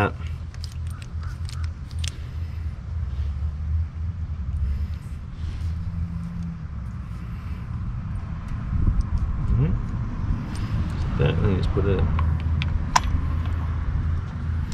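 Scattered light metallic clicks from a spark plug in a spark plug socket and extension being handled and lowered into the cylinder head's plug well, over a steady low rumble.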